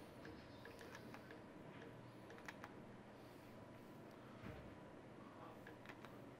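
Near silence: studio room tone with a few faint clicks as the power dimmer on a studio strobe head is adjusted by hand, and a soft low bump about midway.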